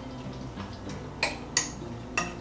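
A utensil stirring cabbage slaw in a glass bowl, with two sharp clinks against the glass about a second and a half in.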